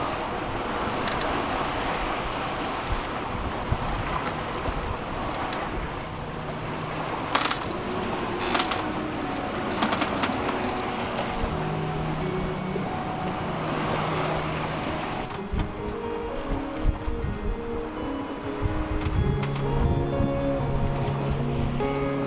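Wind and rushing water of a sailboat under way in open sea, with a few sharp knocks or slaps. Background music with slow held notes comes in about halfway, and the wind and water noise falls away about two-thirds through, leaving mostly the music.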